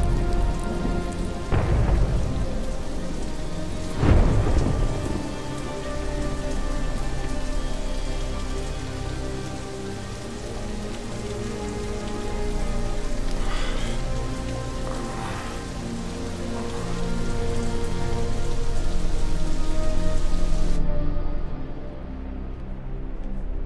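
Heavy rain with thunder, three thunder cracks in the first few seconds, over a sustained musical drone. The rain hiss drops away suddenly near the end, leaving the drone.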